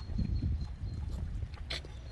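Metal outdoor park exercise machine clunking and knocking as it is worked by leg pushes, with a sharper click near the end, over a low rumble.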